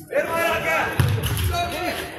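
Players' voices calling out on a kabaddi court during a raid, with dull thuds of feet on the foam mat from about a second in.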